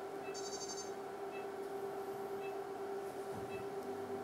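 Endovenous laser unit giving short high beeps about once a second over a steady hum, with a brief higher chirp near the start: the device's signal tones while the laser fires during fibre pull-back.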